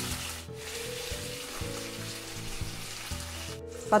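Slices of marinated smoked pork belly sizzling steadily as they fry in a stainless steel frying pan.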